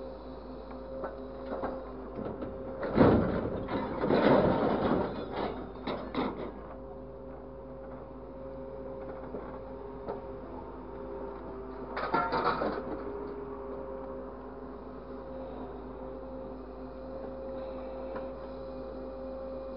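Grapple truck's hydraulic crane at work on scrap metal: a steady machine hum with a constant whine from the engine and hydraulic pump, broken twice by scrap metal clattering and crashing, a long spell about three seconds in and a shorter one about twelve seconds in.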